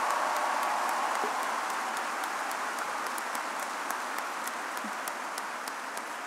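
A large crowd applauding, the applause slowly dying down.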